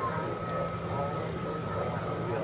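Model freight train rolling past on the layout with a steady low hum, under background chatter of voices.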